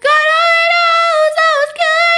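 A young girl singing solo and unaccompanied, holding a long sustained note on one pitch, with a short break near the end before the note resumes.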